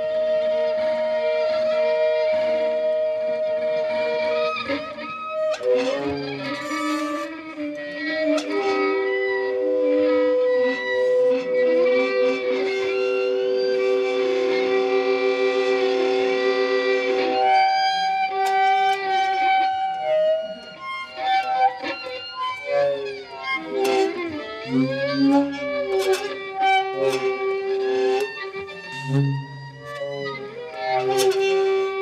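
Saxophone and violin improvising together, the saxophone's bell worked with hand-held cups. Long held notes over the first half give way to shorter, broken phrases with sharp clicks and taps in the second half.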